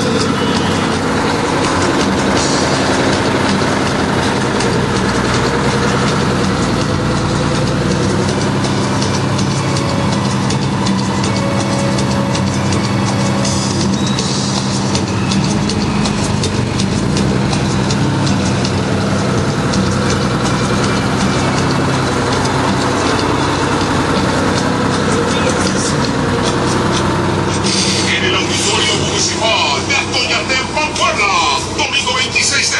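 Loud street noise: a bus engine running steadily, with voices and music mixed in.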